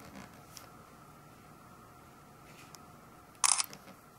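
Faint handling noise on a camera's microphone over a low steady hum, with a few small ticks and one short, loud, hissy burst of noise about three and a half seconds in.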